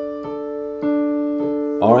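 Digital piano playing a broken D chord, the root D, the A and the D above, with the sustain pedal down so the notes ring on together, a new note struck about every half second.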